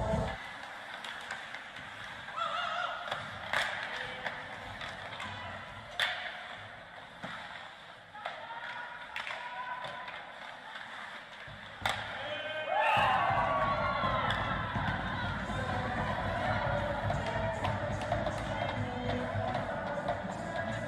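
Ice hockey game sounds in an arena: arena music cuts off at the start. Then come sharp puck and stick hits, a few loud single cracks, and occasional voices. About 13 seconds in, music starts again and carries on over the play.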